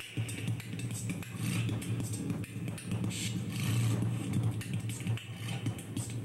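Live experimental electronic music: a steady low drone with washes of hissing, scraping noise swelling over it, strongest around a second and a half in and again near the middle.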